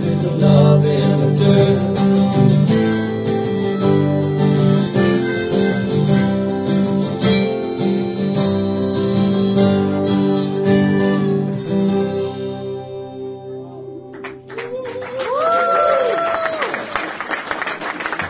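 Two acoustic guitars strummed with a harmonica playing the song's closing instrumental, the final chord ringing out and dying away about two-thirds of the way through. Near the end, applause and a whoop from the audience start up.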